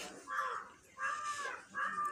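An animal calling three times in short, pitched calls, each about a third to half a second long.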